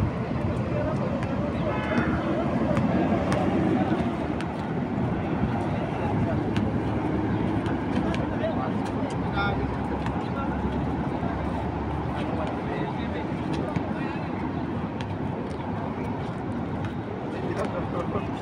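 Steady road traffic noise, with players' voices calling out now and then.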